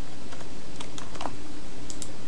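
Computer keyboard keys clicking a few times at irregular intervals, over steady background hiss.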